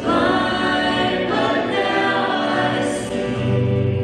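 Live worship song: a woman and a man singing together over acoustic guitar and keyboard, with a deeper held note coming in about three seconds in.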